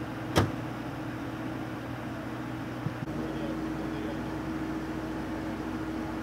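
Steady low hum of an idling vehicle over street background noise. One sharp knock comes about half a second in, and a fainter click just before the background shifts about three seconds in.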